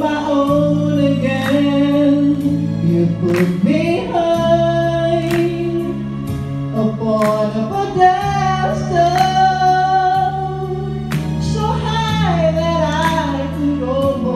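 A woman singing a slow pop ballad into a microphone, drawing out long held notes with vibrato and sliding runs over sustained electric keyboard chords, all through a PA.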